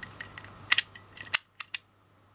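Small plastic click mechanism of an Anpanman 'Jam Ojisan's Bread Factory' toy, its plunger pressed down to flip the figure from the unbaked to the baked Anpanman face. A series of sharp clicks, the two loudest a little over half a second apart, then a few fainter ones.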